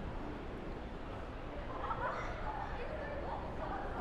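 Open-air background ambience with faint, distant voices of people talking, over a low steady rumble.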